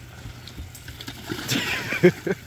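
A dog splashing as it wades down into the shallow water of a swimming pool, a short splash about a second and a half in.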